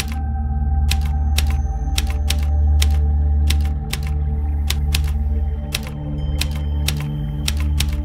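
Typewriter keys striking at an uneven pace, two or three clicks a second, laid over a low sustained music drone.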